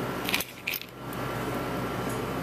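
Two quick metallic clinks about a third of a second apart, a small metal dissecting tool knocking against a metal tray, over a steady background hum.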